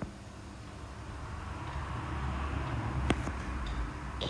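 Vehicle rumble and hiss, slowly growing louder, with a single click about three seconds in.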